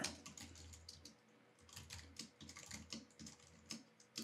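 Faint computer keyboard typing: a quick run of keystrokes, with a short pause a little after a second in.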